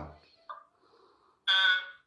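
A short, loud, high-pitched beep-like sound from a phone's speaker during a video call, lasting under half a second near the end.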